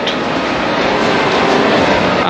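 Steady, even rushing background noise of a busy indoor shopping mall hall, with no distinct events standing out.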